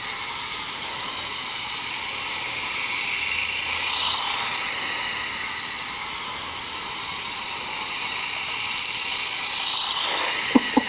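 Small electric motor and plastic gears of a toy radio-controlled truck whirring steadily as it drives in reverse, the pitch drifting up and down a little as it speeds and slows.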